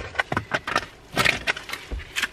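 Crinkling and rustling of a plastic rubbish bag and paper rubbish being handled, heard as a quick run of sharp crackles and clicks, with a cluster a little after a second in.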